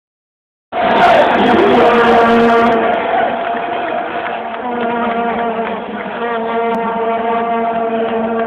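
Stadium crowd cheering and chanting while vuvuzelas blow long, steady horn notes, starting abruptly under a second in and staying loud throughout.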